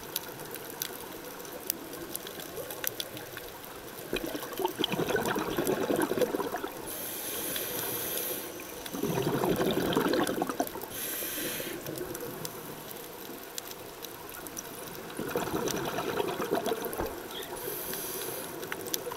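Scuba diver breathing through a regulator underwater: three gurgling rushes of exhaled bubbles, about five seconds apart, each followed by a short high hiss of inhalation. Faint scattered clicks run underneath.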